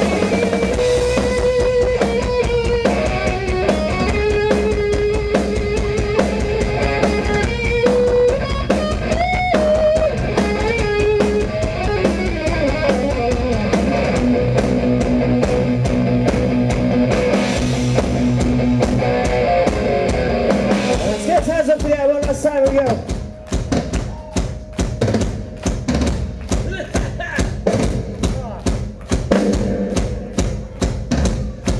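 Live rock band playing an instrumental section: electric guitar lead lines over drums and bass guitar. About 22 seconds in the guitars drop away, leaving a steady drum beat.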